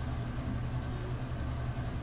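A steady low hum with a faint haze of background noise, no distinct strokes or knocks.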